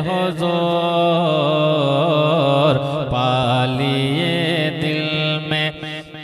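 A solo male voice reciting a naat, holding one long melismatic note with wavering ornamental turns of pitch; the note ends just before the close.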